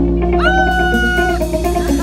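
Live rock band with electric guitars. About half a second in, a lead guitar note bends up and is held for about a second over sustained bass notes and the rest of the band.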